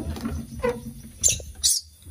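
Small animal squeaking twice, short and very high-pitched, a little after a second in and again near the end, over light handling clatter.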